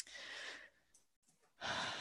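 A person breathing into a close microphone. A small click is followed by a short breathy exhale of about half a second, and about a second and a half in there is an intake of breath just before speech begins.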